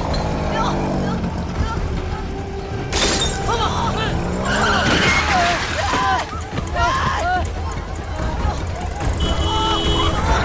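Action-film fight soundtrack: background score over a low rumble, with a falling engine-like drone in the first second, a loud crash about three seconds in, then shouts and yells over further crashes as a motorcycle goes down.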